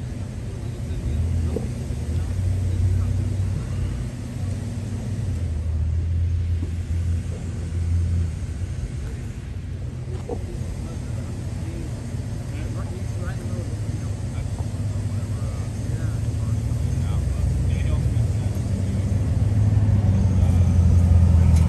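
Low, steady rumble of a vehicle engine running, with faint voices in the background.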